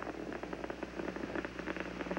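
Space shuttle climbing on its main engines and solid rocket boosters, heard as a steady crackling rumble through a live TV audio feed with a low hum under it.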